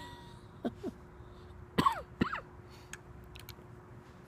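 A man's brief wordless vocal sounds, loudest about two seconds in, with a few light clicks as a handheld torch lighter is handled.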